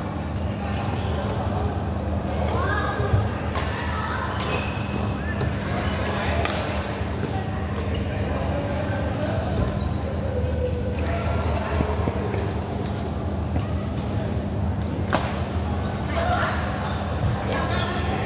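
Badminton rackets striking a shuttlecock during rallies: several sharp smacks at irregular intervals, the loudest about three seconds in. Voices chatter in a reverberant hall, over a steady low hum.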